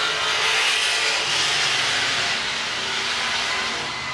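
Race car engines running hard as a pair of oval-track stock cars race past down the home stretch, a steady loud engine noise that swells in the first second and eases a little near the end.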